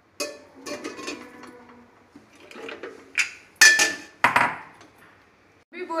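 Raw taro roots dropped from a glass bowl into a brass pressure cooker, a run of knocks and clatters against the metal pot with short ringing clinks; the loudest pair of knocks comes near the middle.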